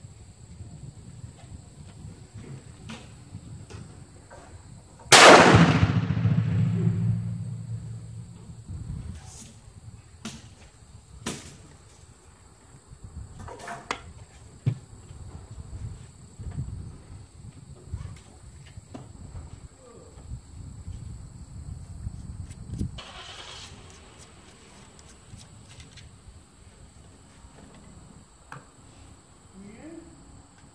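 A single shot from a Hatfield single-shot break-action 12-gauge shotgun firing a rifled slug, about five seconds in, with a long echoing tail that dies away over a few seconds. Scattered light clicks and handling knocks follow.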